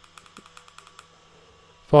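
Fire button of a Smok Morph 219 vape mod clicked five times in quick succession, a rapid run of light clicks in the first second: the five-click shortcut that brings up the mod's power-off prompt.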